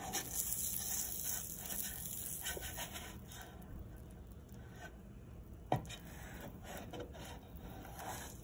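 Nylon spatula scraping across a nonstick frying pan as it works under a grilled cheese sandwich and turns it, over the frying of the margarine. One sharp knock a little before six seconds in as the sandwich is turned over in the pan.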